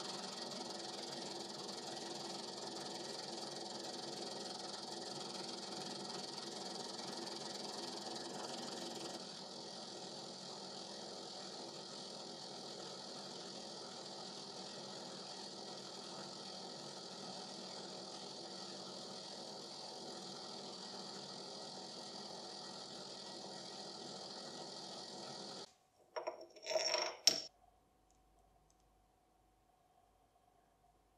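Benchtop lathe-mill combo running with its tool cutting the end of a metal bar: a steady hum with several tones, a little quieter from about nine seconds in, that stops abruptly a few seconds before the end. A brief loud clatter follows.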